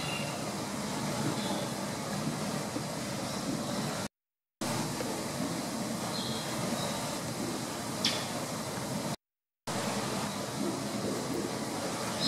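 Steady rushing background noise of an indoor tropical bird house, with a few short, high bird chirps, a couple after the middle and more near the end, and one sharp click. The sound cuts out to silence twice for about half a second.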